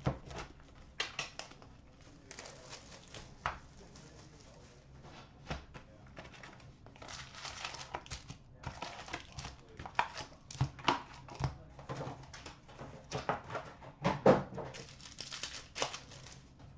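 An Upper Deck Series 2 hockey card box being opened by hand: cardboard tearing and rustling, then wrapped card packs crinkling and tapping as they are pulled out and set down on a glass counter. The sounds come in short scattered bursts, busier in the second half.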